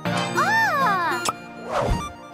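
Cartoon sound effects over children's background music: a pitched sound that slides up and then down, a sharp click about midway, then a short swelling whoosh near the end.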